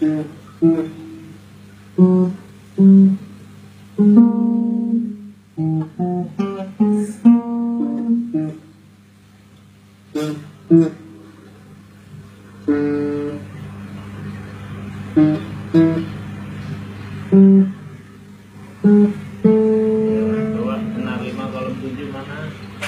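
Acoustic guitar played in separate plucked notes and a few short strummed chords, with pauses between them, over a steady low hum.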